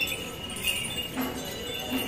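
Elephant's neck bells jingling as the elephant sways, a strike roughly every half second with a lingering ring.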